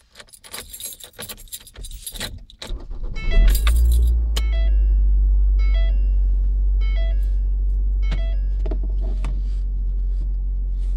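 Keys jangling, then a car engine starts about three seconds in and settles into a steady low idle. Over the idle, a short electronic chime repeats about once a second.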